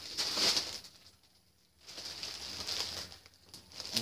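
Plastic-wrapped package of paper napkins rustling and crinkling as it is handled, in two stretches with a short near-silent pause about a second in.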